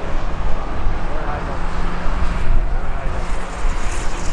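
Racing car engines running around the circuit, with one steady engine note through the middle, over heavy wind rumble on the microphone.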